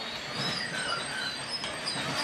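PeruRail passenger coaches rolling slowly along the track, their steel wheels giving short, high-pitched squeals over a steady rumble.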